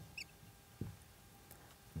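Faint squeaks of a marker pen writing on a whiteboard: a few short high chirps near the start, then soft scratching strokes.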